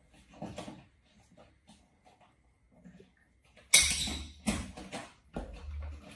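Stifled laughter: three short, breathy bursts, the first about four seconds in, with air buffeting the microphone.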